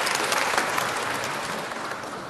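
Audience applause in a hall, many hands clapping, dying away gradually over the two seconds.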